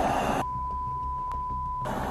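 A censor bleep: one steady beep tone, about a second and a half long, starting about half a second in, with the rest of the audio muted beneath it.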